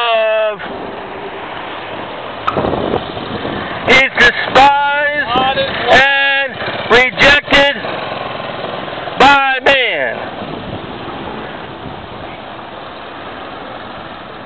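Loud shouted speech in short phrases separated by pauses, clipping on its loudest syllables, over a steady hum of street background noise.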